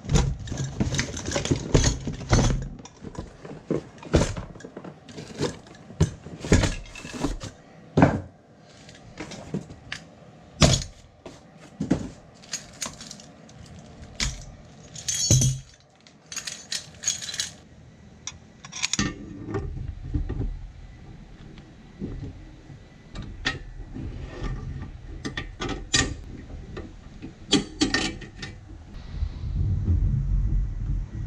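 Metal parts of a new trailer tongue jack and its bolts being unpacked and handled: many separate clinks, clanks and knocks of metal on metal and on a concrete floor. A steady low rumble joins in for the second half.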